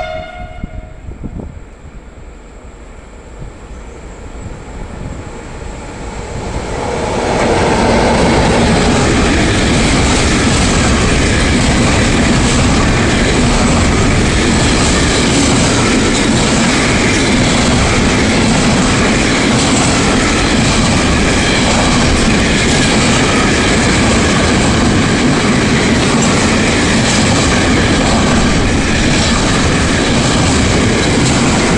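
Freight train passing through a station. The last moment of a horn blast at the very start, then the approaching train grows louder over a few seconds and settles into the loud, steady rolling noise of the wagons passing on the rails.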